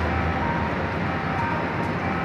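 Steady city street traffic noise: an even rumble of vehicles with a faint high whine that comes and goes.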